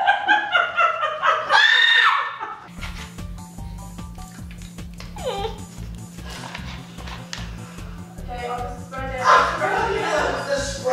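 A woman laughing loudly with high squeals for the first couple of seconds, then background music with a steady low beat.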